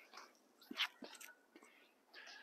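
Mostly quiet, with a few faint scuffs and steps of tennis shoes on a hard court as a player pushes off from a low, wide stance and steps back. The loudest is just under a second in.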